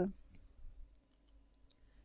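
A few faint clicks of a computer mouse after a voice trails off, then near silence.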